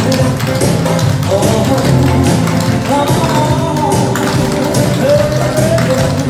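An upbeat recorded song playing loudly over stage speakers, with the rapid clicking of clogging taps from a line of dancers on the stage floor.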